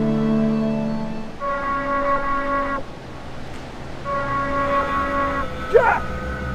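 Slow, ambient film-score music of long held notes: a low chord fades about a second in, then two phrases of higher sustained notes follow with a short pause between them, and a quick rising sweep comes near the end.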